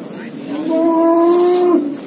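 A calf mooing once: a single steady, even-pitched call of just over a second, starting about half a second in.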